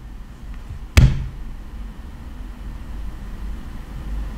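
A single sharp knock about a second in, the loudest sound, with a short low ring after it, over a steady low hum.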